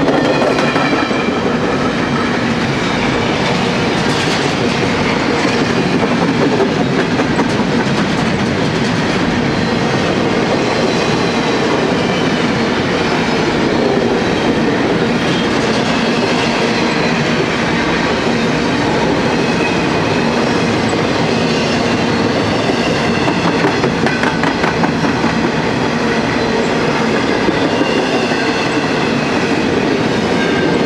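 Empty intermodal well cars of a long freight train rolling steadily past, their wheels running over the rails.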